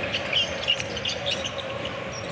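Basketball sneakers squeaking briefly on a hardwood court several times over the steady hum of an arena crowd.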